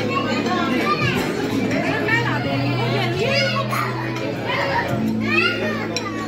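Lively crowd chatter with excited, high-pitched voices calling out, over background music with steady held bass notes.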